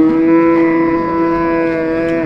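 A cow mooing: one long call that rises a little as it starts and then holds a steady pitch.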